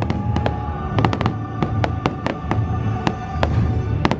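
Fireworks bursting in a rapid, irregular run of sharp bangs and crackles, over show music with held notes and a low rumble.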